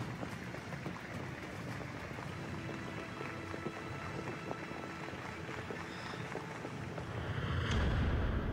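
Steady rushing, wind-like noise from a documentary soundtrack, with faint low tones under it, swelling into a louder whoosh near the end.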